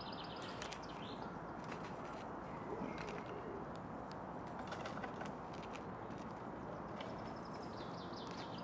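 Faint scratching and rustling clicks as a red squirrel rummages in a fabric backpack, over a steady outdoor background hiss. A small bird's rapid, high chirping trill sounds at the start and again near the end.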